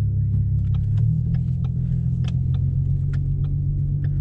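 Ford Mustang engine running steadily at low speed, heard from inside the cabin as a low drone that steps up slightly about a second in, with scattered light clicks over it.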